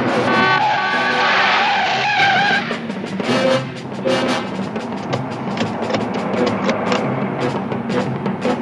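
Orchestral chase music: brass stabs for the first couple of seconds, then a fast, driving snare drum rhythm under brass and strings, about four strikes a second. Car engine and skidding tyre sounds are mixed in.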